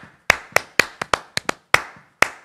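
A man clapping his hands in a quick rhythmic body-percussion pattern: about eight sharp claps, some coming in close pairs.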